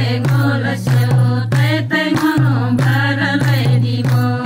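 A group of Gurung women singing a folk song together, with steady hand-clapping keeping the beat over a low sustained tone.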